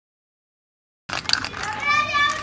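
Dead silence for about a second, then a high-pitched, wavering call sets in over background noise.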